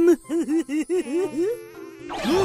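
A cartoon character's giggle: a quick run of about eight short, bouncing pitched notes, then a softer held tone near the end.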